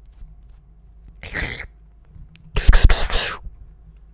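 Breath noise close to the microphone: a short hissing breath about a second in, then a louder, longer burst of breath that hits the microphone.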